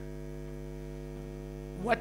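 Steady electrical mains hum, a stack of even low tones with no change, and a man's voice starting a word near the end.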